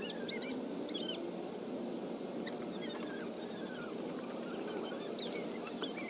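Small birds chirping in short, high calls scattered over a steady low outdoor hum, with a sharp click a little after five seconds in.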